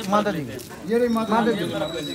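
Voices of several people talking and calling out in short phrases. A faint steady high-pitched tone comes in about midway.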